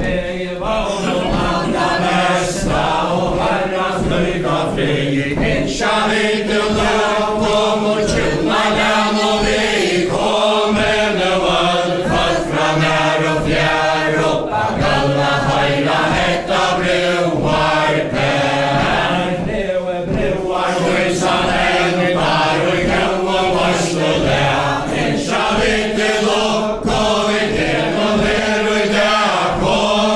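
Faroese chain dance: a group of men and women singing a ballad unaccompanied, with the dancers' feet stepping in a steady rhythm on a wooden floor.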